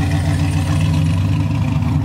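Chevrolet C10 pickup's engine held at steady high revs during a burnout, the rear tyres spinning in a cloud of smoke.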